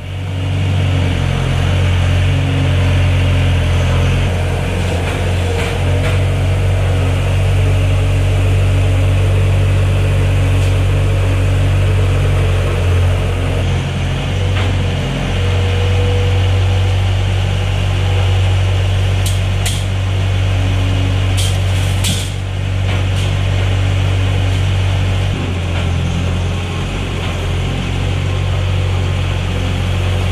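Skid-steer loader's engine running steadily while the machine lifts and sets round hay bales onto a bale feeder, with a few sharp clicks about two-thirds of the way through.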